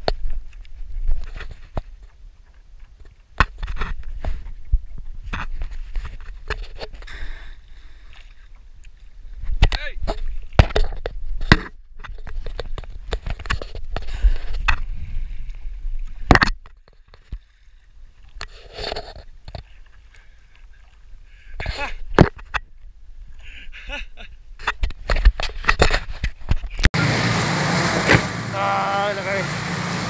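Water sloshing and splashing around a stand-up paddleboard, with wind rumbling on the microphone and scattered sharp knocks. Near the end it cuts to loud, excited shouting voices over steady noise.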